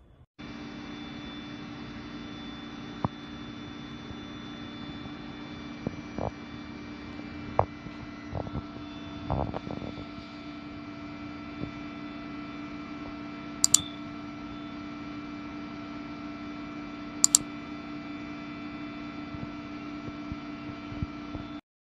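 A steady electrical hum with several fixed tones, coming in abruptly at the start. Over it are a scattering of sharp clicks and knocks: a cluster around the middle, then two quick double clicks later on.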